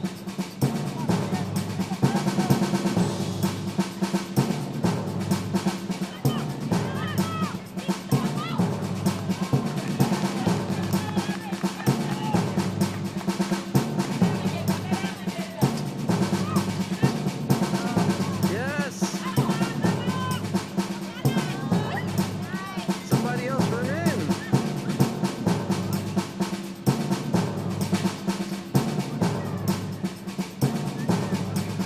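Drumming runs throughout: fast snare-like rolls over a steady, low beat that repeats about once a second, with scattered shouting voices over it.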